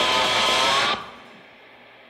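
Post-rock band with electric guitars and bass playing a loud, held passage that cuts off abruptly about a second in. Only a faint hiss and a low hum remain.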